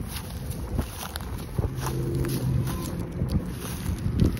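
Wind rumbling on the microphone, with a few light clicks scattered through it.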